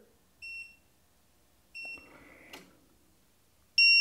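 Two short high electronic beeps about a second and a half apart, then a lower tone ending in a faint click. Near the end a steady high-pitched alarm tone starts and holds: the load electronics' alarm sounding as the LiFePO4 battery's protection cuts the output off at about 200 amps.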